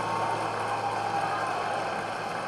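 Film soundtrack holding a steady low drone note under a noisy wash, with no beat or melody moving.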